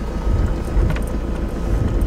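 A vehicle driving slowly over a rough dirt track, heard from inside the cab as a steady low rumble of engine and tyres.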